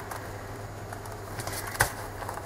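Faint rustling of a sewn paper book block being handled, with one sharp tap near the end as the block is set down on the cutting mat.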